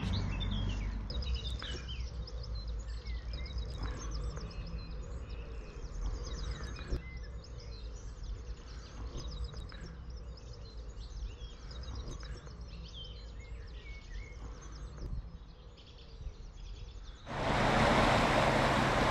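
Several small birds chirping and singing over a low steady rumble. Shortly before the end it cuts suddenly to the louder, even rush of river water pouring through a stone bridge arch.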